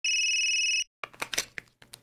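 A telephone ringing once: a steady, high ring lasting under a second, cut off sharply. After a short gap comes a quick flurry of short clicks and sounds.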